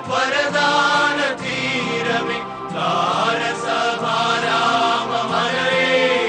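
Slow sung chant: voices holding long notes and gliding between them over a steady low accompaniment.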